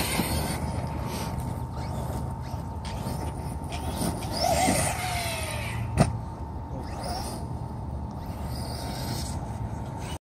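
Electric RC monster truck (Arrma Nero) driving over dirt, its brushless motor whining, with one rising whine as it speeds up about four and a half seconds in. A single sharp thump about six seconds in is the loudest sound.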